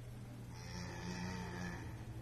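A cow moos once, a steady call lasting about a second.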